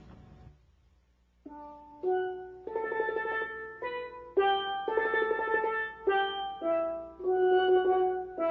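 Steel pan played with sticks: a melody of separate struck notes, each ringing briefly. It starts about one and a half seconds in, after a short hush.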